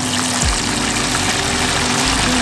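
Battered chicken wings deep-frying in a pot of hot oil during the second fry: a steady, loud sizzle and bubbling of the oil.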